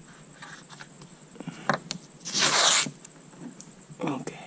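Masking tape pulled off the roll in one ripping pull lasting a little over half a second, just past the middle. It is preceded by a few light knocks and rubs of hands pressing the tape onto the bus's sheet-metal roof edge.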